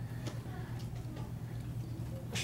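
Scissors snipping through paper: a few light clicks, roughly two a second.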